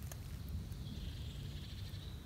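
Quiet outdoor ambience: a steady low rumble on the microphone, with a faint thin high tone in the second half and a few faint ticks.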